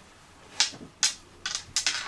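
Hands pressing down on the closed clear lid of a Tonic stamp platform to stamp onto card, giving a few short, sharp scuffs and clicks, two spaced out, then a quick run of them near the end.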